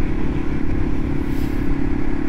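Yamaha TW200's single-cylinder four-stroke engine running at a steady cruising speed, with road and wind noise on the microphone.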